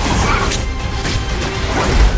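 Film trailer soundtrack: music layered with crash and impact sound effects, with the loudest hit near the end.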